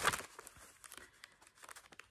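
A paper letter being opened and handled: a louder rustle right at the start, then faint, scattered crinkles as the sheet is unfolded.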